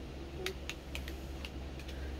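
A run of about seven light, irregular clicks and taps from fingers handling a small plastic item, such as a makeup case.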